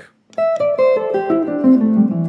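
Semi-hollow electric guitar playing a quick descending A minor pentatonic run, about nine single notes stepping down to a low A that is left ringing.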